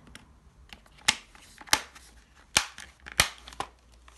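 Plastic clips on a Dyson V8/V10 motorised cleaner head snapping into place as the clear cover is pressed back on: four sharp clicks spread over a few seconds, with fainter ticks between.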